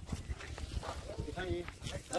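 Faint, brief voices in the background over a low steady rumble.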